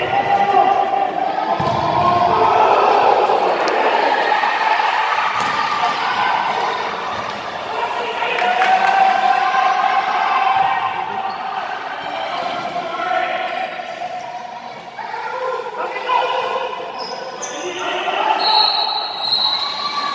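Voices of players and spectators calling out in a sports hall, with a few sharp thuds of a futsal ball being kicked and hitting the wooden floor.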